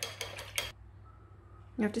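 A quick run of about six light clinks in the first second, like small hard objects tapping together.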